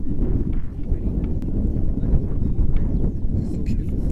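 Wind buffeting the camera's microphone: a loud, uneven low rumble, with a few faint clicks over it.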